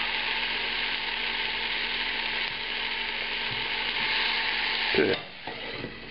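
Onion and tomato pieces sizzling steadily in a hot, lightly oiled non-stick pan while a spatula turns them. The sizzle drops off abruptly about five seconds in as the pan is covered with its lid.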